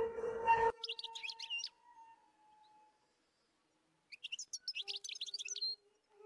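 A small songbird chirping in two quick bursts of rapid high notes, the first about a second in and the second about four seconds in, with near quiet between them. A held background music drone cuts off just before the first burst.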